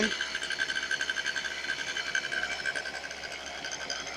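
Honda Dio AF27's 50cc two-stroke single-cylinder engine idling steadily with a fast, even pulse. It is running again after refuelling, which shows the stall was caused by an empty fuel tank.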